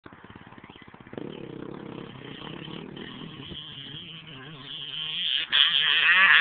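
2010 Yamaha YZ250 two-stroke motocross bike under power as it comes toward the camera, its engine getting steadily louder, with a brief drop in sound near the end just before it gets much louder.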